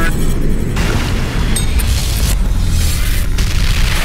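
Trailer sound design: loud deep booms and rumble over music, with new hits about a second and two seconds in.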